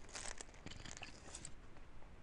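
Faint computer mouse clicks: a quick cluster just after the start, then a few scattered single clicks, over a low background hiss.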